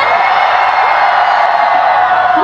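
Concert crowd cheering loudly and steadily, a high, dense mass of many voices.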